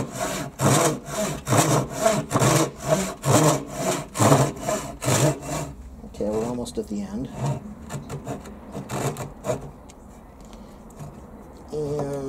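Harbor Freight 10-inch, 15-teeth-per-inch pull saw cutting through a clamped wooden board in quick, even back-and-forth strokes, about three a second; about six seconds in the strokes turn slower and fainter as the cut nears its end.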